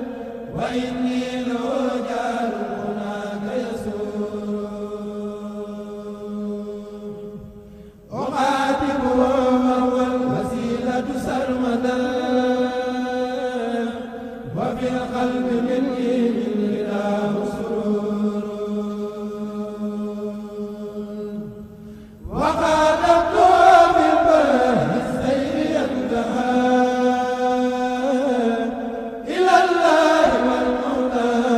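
A kourel of young male voices chanting a Mouride khassida, an Arabic devotional poem, unaccompanied through microphones. Long held, gliding melodic phrases run over a steady low note, and a new phrase comes in loudly about 8, 14 and 22 seconds in.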